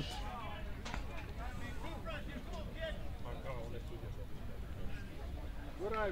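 Faint, distant voices of players and onlookers around the ballfield, over a low steady background rumble, with one short sharp click about a second in.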